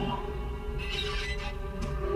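Dark, ominous film score playing through a home-theater speaker. A low drone and a steady mid-pitched tone hold throughout, with a brief brighter swell about a second in.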